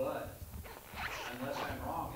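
A man talking indistinctly into a handheld microphone, with a brief noise at the very start.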